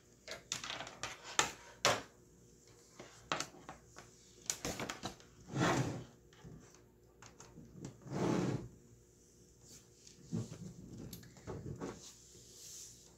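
Handling noises of a laptop and its power cable being moved about on a wooden table: scattered clicks and knocks, with two longer rustling swells in the middle and a few more knocks near the end.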